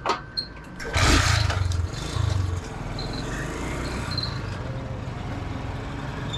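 Motorcycle engine starting about a second in, loudest at the moment it catches, then running steadily.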